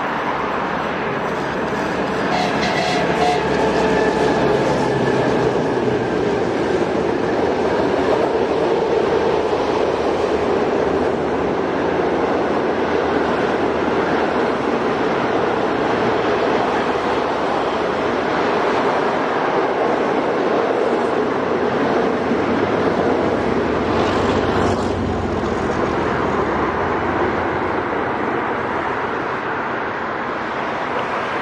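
Train headed by NOHAB M61 diesel-electric locomotives passing at speed, their EMD two-stroke diesel engines running under power, followed by passenger coaches rolling by with wheel and rail noise. The sound swells in the first few seconds, holds steady, and eases off near the end.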